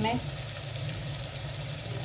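Tomato-and-spice masala sizzling steadily in hot oil in an aluminium pot, an even frying hiss.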